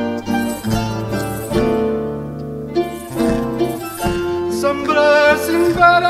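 Live folk string ensemble of guitars and other plucked string instruments playing a dance tune together, with a singer's voice coming in during the last second or two.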